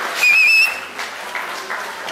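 A short whistle blast of about half a second near the start, warbling in pitch, over a steady hiss of crowd noise.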